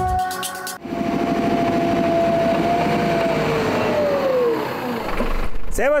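Snow groomer's engine running, with a steady whine that falls in pitch about four seconds in as it slows.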